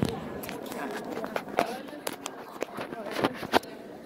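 Irregular knocks and rubbing from a phone being moved and handled close to its microphone, mixed with a few short voice sounds; the knocks die away near the end.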